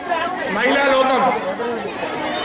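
Speech only: a man talking into a handheld microphone, addressing a crowd.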